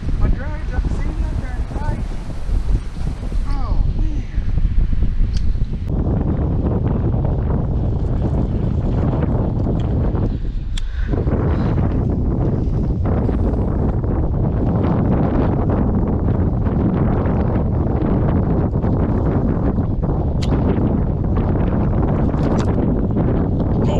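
Wind buffeting the microphone: a loud, rough rumble, gusty for the first few seconds and then heavier and steadier from about six seconds in.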